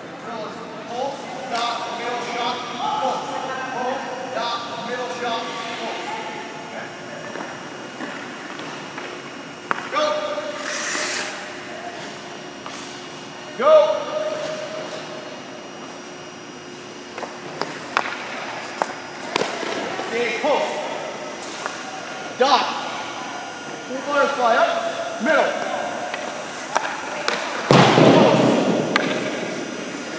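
A hockey goaltender's skates and pads scraping and thudding on the ice during butterfly and push drills, with one loud scrape a couple of seconds before the end. Indistinct voices echo around the rink between the knocks.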